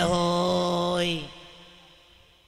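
A man singing one long held 'ho' on a steady pitch into a microphone, breaking off a little over a second in and leaving a short fading echo.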